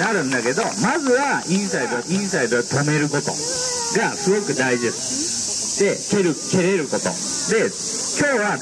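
A chorus of cicadas droning steadily, a high sizzling hiss, under a constant background of overlapping voices.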